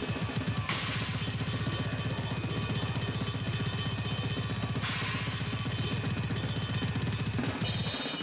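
Metal drum kit played at high speed: a very fast, even stream of double bass drum strokes under snare and cymbal crashes, with the kick rhythm breaking off near the end.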